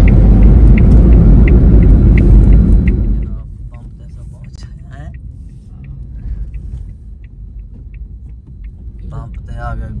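Car cabin road and engine rumble that drops away sharply about three seconds in as the car slows, with a turn-signal indicator ticking about twice a second throughout.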